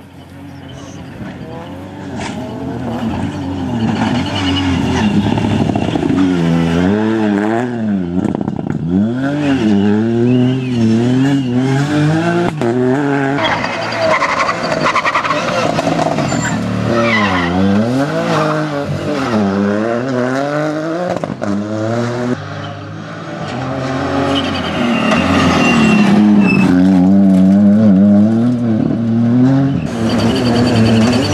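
Ford Fiesta rally car engine at full stage pace, its pitch climbing and dropping again and again through gear changes and lifts for corners as the car approaches and passes. The engine is loudest near the end, in a close pass.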